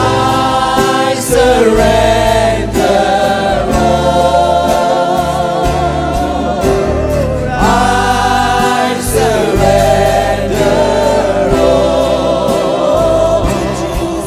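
Live gospel worship music: several singers together holding long notes with vibrato over the band.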